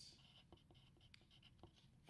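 Faint scratching of a wooden graphite pencil writing on a paper card, in short, broken strokes with small ticks as the point lifts and touches down.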